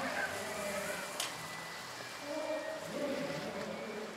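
Indistinct background voices, with a single sharp click about a second in.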